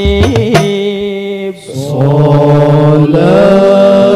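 Male vocal group chanting an Arabic devotional syair in unison, with long held notes that glide and then step up in pitch near the end. A regular percussion beat stops about half a second in, after which the voices carry on alone.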